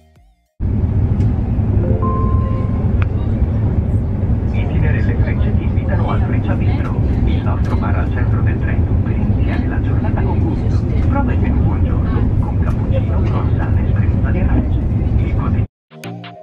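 Passenger train running at speed, heard from inside the carriage as a loud, steady low rumble, with passengers talking over it. A brief beep about two seconds in.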